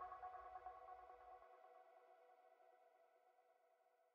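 Faint end of a trance track's fade-out: a sustained synthesizer chord dying away, its low bass cutting off about a second and a half in and the remaining pad fading to nothing.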